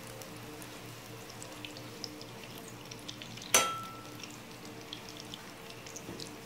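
Butter melting on low heat in a stainless steel pan, giving a faint sizzle with scattered tiny crackles. About three and a half seconds in, a metal spatula strikes the pan once in a sharp clink that rings briefly.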